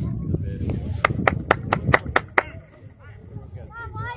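Hands clapping: about seven quick, even claps, starting about a second in and over within a second and a half, with low voices around.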